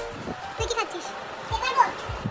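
Young girls' voices: short, high-pitched chatter or calls, with a few low bumps from handling.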